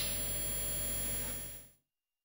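Steady studio background noise, a low mains hum and thin high electronic whine under a faint hiss, with no speech. It fades out and cuts to dead silence about a second and a half in.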